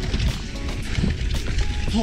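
Mountain bike descending fast on a slippery dirt trail: a steady rumble of tyre and trail noise with rattle, under background music.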